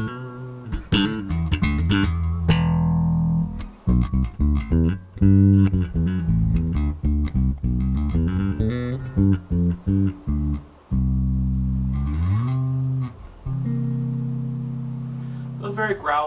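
Zon VB4 headless electric bass with Bartolini active pickups, blended to the centre with the EQ flat, playing a line of plucked notes with a jazz-bass-like tone. Near the end a note slides up in pitch, then a long note rings out.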